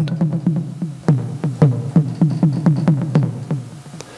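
Tassman 4 physically modelled software synthesizer playing a drum preset: a run of pitched drum hits, about four a second, each falling in pitch, fading out near the end.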